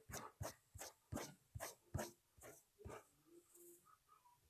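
A quick, uneven series of faint short clicks or taps, about three a second, stopping about three seconds in.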